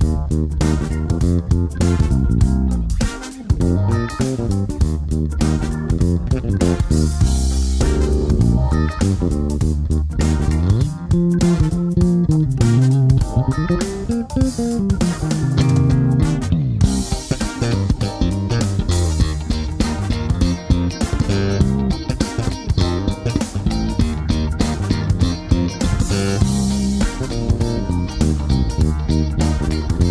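Music Man StingRay electric bass played with the fingers, a continuous run of plucked bass notes, with the treble on its active EQ turned fully up.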